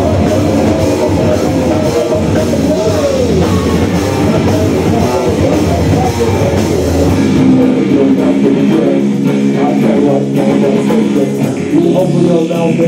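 Live nu-metal band playing loud, with distorted electric guitar and drum kit. About seven seconds in, the deep bass drops away and sustained guitar chords ring on.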